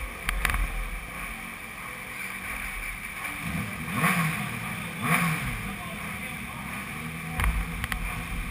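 Racing motorcycle engine idling, with two short throttle blips about four and five seconds in. A few sharp clicks come near the start and near the end.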